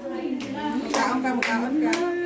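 A small group of people clapping, a handful of uneven claps, with voices calling out over them.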